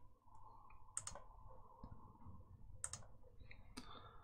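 Computer mouse clicking a few times, faint and sharp: clicks about a second in, near three seconds and again near the end, over quiet room tone.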